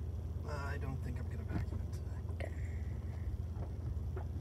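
Steady low rumble of a vehicle heard from inside its cabin, with a faint murmured voice about half a second in and a brief faint high tone a little past halfway.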